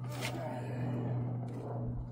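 A man's breath and grunt of effort as he shifts a heavy generator in the back of a van. There is a short knock about one and a half seconds in, over a steady low hum.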